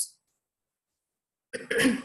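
About a second and a half of silence, then a woman clears her throat once.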